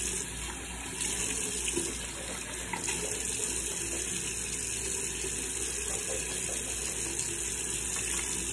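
Bathroom sink tap running steadily into the basin.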